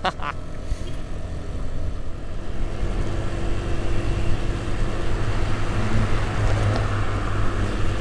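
Motor scooter riding along at steady speed: a low engine hum under the rush of wind and road noise on the helmet camera, growing a little louder in the second half.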